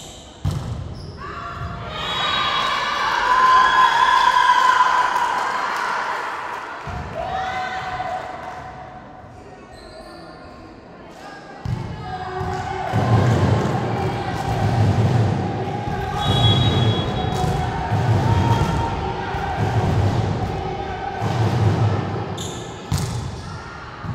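Volleyball rally in a large gym hall, with a sharp ball hit about half a second in, then players' voices and shouts ringing in the hall, loudest a few seconds in as the point is won. From about halfway, background music with a steady low beat about once a second plays under the hall noise.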